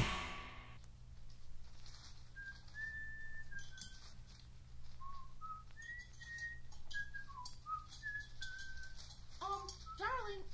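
A person whistling a short tune, faint, in single held notes that step up and down, over a low steady hum; the loud band music dies away in the first second.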